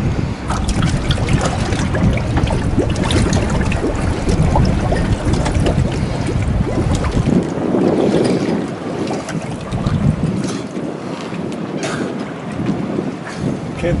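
Wind buffeting the microphone over water lapping and splashing around the boat, with scattered small splashes. The deep wind rumble drops away about halfway through.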